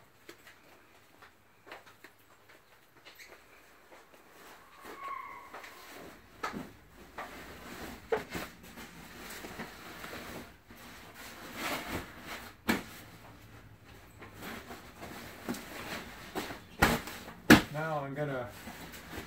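Rustling and swishing of a large fabric travel-trailer cover being rolled up by hand on a car roof, quiet at first and growing busier, with scattered small handling knocks. Two sharp clicks near the end are the loudest sounds.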